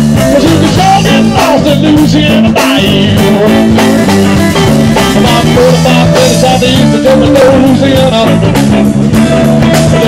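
Live country-rock band playing an instrumental stretch: fiddle and electric guitars over bass guitar and a drum kit, loud and steady.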